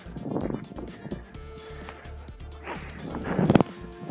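Background music, with a rush of a player sliding across grass about three seconds in, ending in a sharp thump as the soccer ball is kicked away in a slide tackle.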